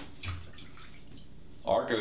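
Merkur 34C safety razor scraping over a lathered scalp in a few faint, short strokes, then a man starts talking near the end.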